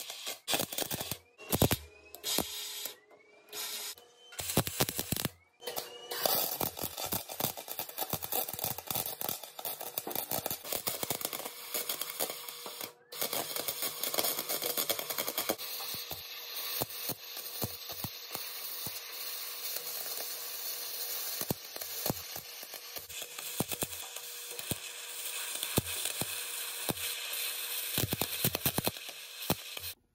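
Lincoln 140 HD wire-feed welder arc welding the steel of an ammo can, set to voltage tap B and wire speed 5, with its polarity just reversed to try to fix the welds. Several short crackling tacks come first, then a long continuous crackling bead with one brief stop about 13 seconds in.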